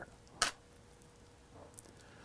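A single short click about half a second in, then near silence with faint room tone.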